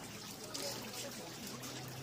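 Water pouring and trickling steadily over the buckets of decorative wooden water wheels into a fountain basin, the flow that keeps the wheels turning.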